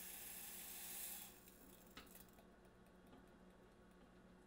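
Near silence: a faint hiss that fades out about a second in, and one faint tick about two seconds in.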